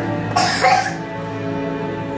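Music of steady held tones plays throughout; about half a second in, a single short cough cuts across it.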